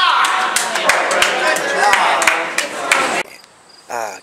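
Loud bowling-alley din: people's voices mixed with sharp clattering knocks, cutting off abruptly about three seconds in, after which faint high chirps are left.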